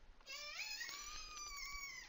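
A long, high-pitched cry from an animal, faint in the background. It starts about a quarter of a second in, rises in pitch at first and then holds for about a second and a half.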